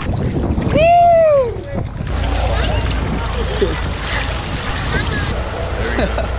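A person's high whoop that rises and falls in pitch, about a second in and the loudest sound. From about two seconds, a steady low rumble of wind on the microphone with water sloshing around swimmers at a boat's ladder.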